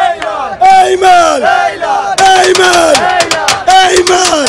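Watermelon vendors shouting a rhythmic hawking chant, short loud calls that fall in pitch, about two a second. From about halfway, sharp clicks sound over the calls.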